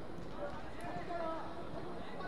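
Distant shouts and calls of football players on the pitch, over a steady outdoor background hiss.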